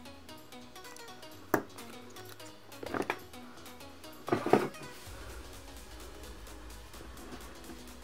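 Background music with a plucked melody, over which a plastic spring clamp is handled and taken off a small homemade aluminium-air battery cell: one sharp click about a second and a half in, a short clatter around three seconds, and a louder double knock around four and a half seconds.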